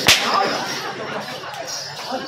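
A single sharp crack of a braided rope whip swung by a performer, about a tenth of a second in, followed by the noisy background of the performance.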